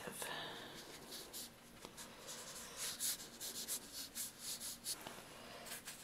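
Watercolour brush stroking and flicking on paper in a quick run of short strokes, busiest from about two to five seconds in.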